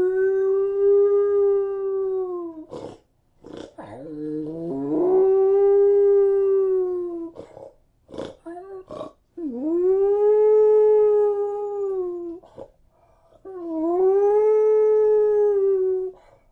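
A dog howling: four long howls of about two to three seconds each, every one rising, holding a steady pitch and dropping off at the end, with short breaks and a few brief sharp sounds between them.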